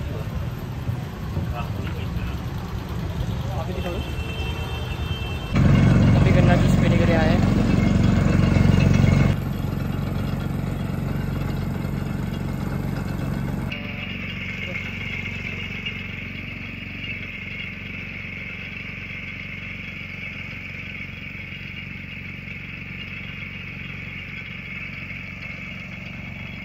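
Town street noise with vehicle engines running and some voices, in several abruptly changing clips; a louder stretch runs from about six to nine seconds in.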